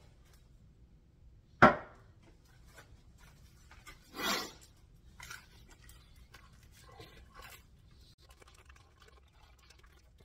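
A sharp knock about two seconds in and a short rasp about four seconds in, then a bite into thin, crispy pizza crust with faint crunching and chewing.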